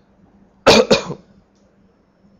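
A person coughing twice in quick succession, a short double cough lasting about half a second.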